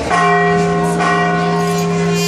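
A church bell struck twice about a second apart, each stroke ringing on into the next.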